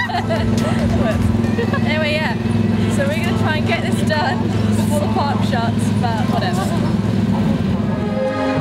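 Steady low drone of a moving vehicle, with indistinct voices talking over it.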